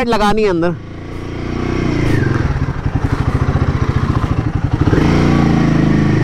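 Royal Enfield Himalayan 450's single-cylinder engine running at low speed as the bike rolls along, with a rapid, even firing beat that swells a little about two seconds in and again near the end as the throttle opens.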